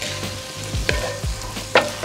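Chicken and vegetable egg-roll filling sizzling in a cast-iron skillet as it is stirred with a wooden spatula. The spatula knocks against the pan about a second in and again near the end.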